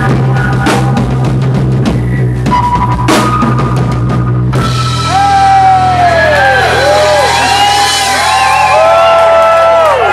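Live rock band: a drum kit pounds over a sustained bass note, then stops about halfway through. A louder wash of noise follows, full of sliding, wavering high tones.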